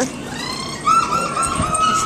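A dog whining: a faint rising whimper, then a high, wavering whine held for about a second.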